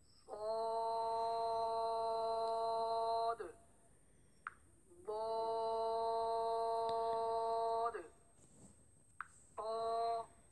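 A voice reciting Arabic letter names in Qaidah style: ṣād and then ḍād, each vowel held on one steady pitch for about three seconds, with a short ṭā just before the end.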